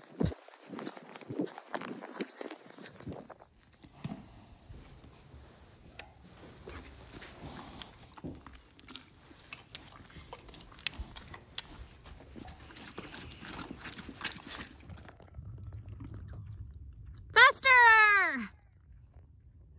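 Horse hoofbeats in snow, then a horse chewing and mouthing close to the microphone, with scattered clicks. Near the end, a short loud call falling in pitch.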